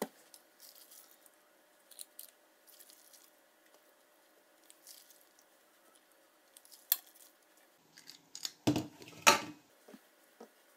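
Faint rustling of hands smoothing thin pastry wrappers on a counter and dropping filling onto them. A metal cookie scoop clicks once, then scrapes and knocks in a stainless-steel bowl of filling, loudest near the end.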